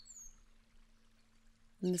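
Mostly quiet background hiss with a faint steady low hum. A short, high, falling bird chirp sounds at the very start, and a woman's voice begins near the end.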